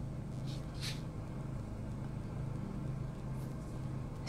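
Steady low background hum of room tone, with no speech. Two faint, brief hisses come about half a second and one second in.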